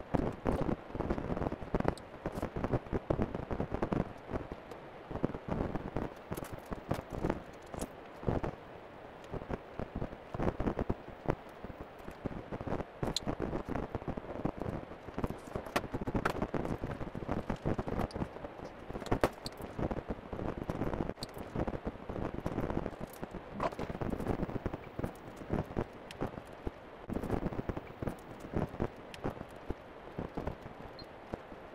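Irregular handling noise: scattered clicks, knocks and rustling as an electric unicycle and its packaging are handled, with footsteps partway through.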